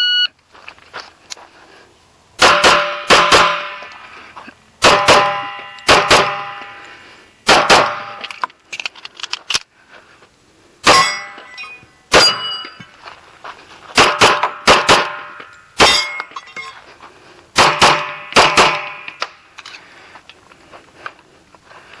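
A shot timer's start beep, then a Kimber Custom II 1911 in .45 ACP firing rapid shots, mostly in quick pairs with short pauses between groups as the shooter moves, the last shot about eighteen and a half seconds after the beep.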